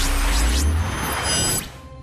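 Cartoon magic-spell sound effect over score music: a rushing whoosh with high chiming tones and a low rumble, cutting off sharply near the end.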